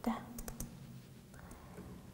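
Three quick keyboard keystroke clicks about half a second in, as the last digit of a command and Enter are typed, after a short bit of voice at the start.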